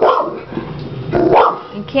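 French mastiff barking twice, once right at the start and again about a second and a quarter later, at a hermit crab it dislikes.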